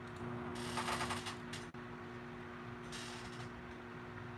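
Two brief rustling noises with faint clicks over a steady low electrical hum.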